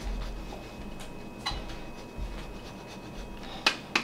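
Parmesan being grated on a flat metal hand grater: quiet scraping, with a few sharp clicks, the loudest near the end.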